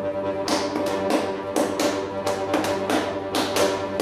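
Chromatic button accordion playing sustained chords punctuated by sharp, percussive accents in a quick, uneven rhythm, several a second.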